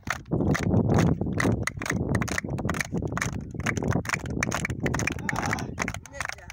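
A crowd of children clapping in a fast, uneven patter of sharp claps, with voices murmuring underneath.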